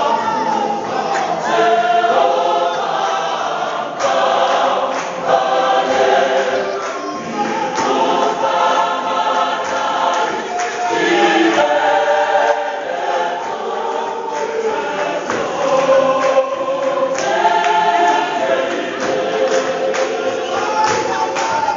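Gospel choir of mixed voices singing in Southern African clap-and-tap church style, with hand claps keeping the beat.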